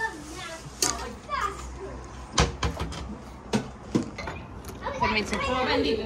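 Indistinct voices in the room with a handful of sharp crunches close to the microphone: crispy rice scraped from the bottom of the pot being chewed.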